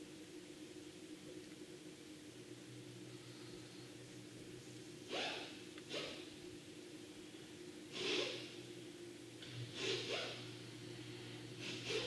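A person breathing close to the microphone, several short breaths starting about five seconds in, over a faint steady hum.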